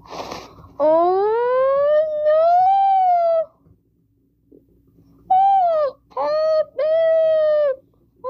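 A child's high-pitched, drawn-out wail that rises steadily in pitch for about two and a half seconds, followed after a pause by three shorter wails, each falling off at the end. A brief rustle comes just before the first wail.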